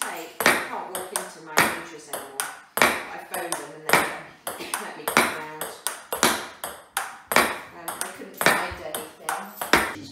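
Table tennis rally against a rebound backboard: the ball clicks off the bat, bounces on the laminate table and pings off the thin MDF board in a steady rhythm, about one stroke a second with lighter bounce clicks between.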